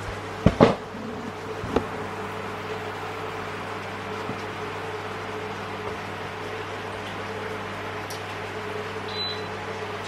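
Steady hum of a portable induction hob under a frying pan, with a soft hiss from the honey, vinegar and soy glaze bubbling as it reduces around pork belly. A few sharp knocks in the first two seconds.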